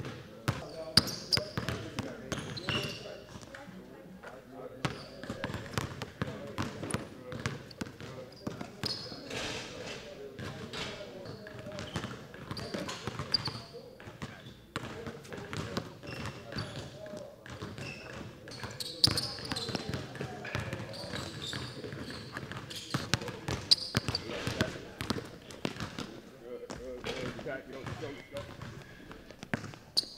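Basketball bouncing on a hardwood gym floor during dribbling drills: irregular thuds throughout, with people talking in the background.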